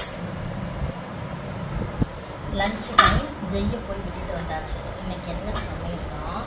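Stainless steel tiffin carrier containers clinking as they are handled and stacked, a few light metal clinks with the sharpest, briefly ringing one about three seconds in.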